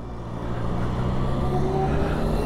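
Road vehicle noise: a steady low motor hum over a rumble, growing gradually louder, with a faint high whine rising slowly in pitch.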